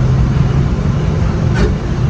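Steady low hum of a motor vehicle's engine running close by, with road-traffic noise around it. A short click or hiss cuts through about one and a half seconds in.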